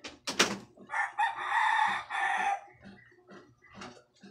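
A rooster crowing once, one long call of about a second and a half, after a sharp click near the start.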